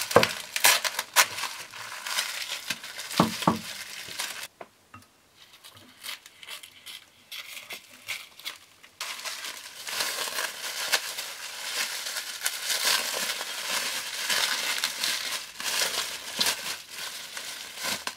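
Plastic stretch wrap and foil-lined bubble wrap crinkling and rustling as they are pulled off the parts of a camera slider, with sharp crackles throughout. The crinkling goes quiet for a few seconds in the middle, then starts again.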